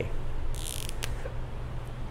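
Dry-erase marker drawing on a whiteboard: one short scratchy stroke about half a second in, then a brief tick about a second in.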